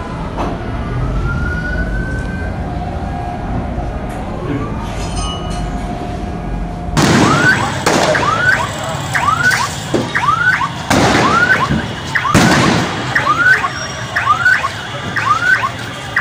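Street noise for about the first half. Then a siren sounds in short rising whoops, about one and a half a second, with several loud knocks over it.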